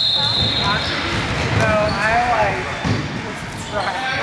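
A basketball being dribbled and bounced on a hardwood gym floor during live play, with the knocks carrying in a large gym hall.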